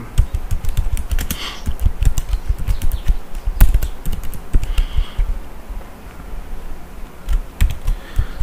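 Typing on a computer keyboard: a run of quick key clicks that comes thick and fast at first and thins out in the second half.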